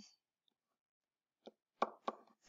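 Near silence broken by a couple of short taps near the end, a stylus knocking on the writing surface while writing.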